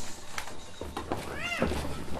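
Footsteps of several people walking across a stage floor, with a single short high call that rises and then falls about one and a half seconds in.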